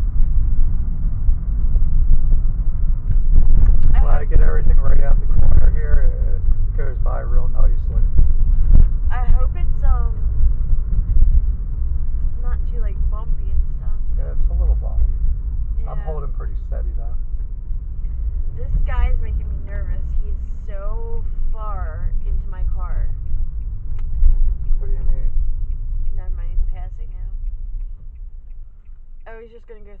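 Steady low road and engine rumble heard inside a moving car's cabin, with voices talking over it. The rumble drops away near the end as the car comes to a stop.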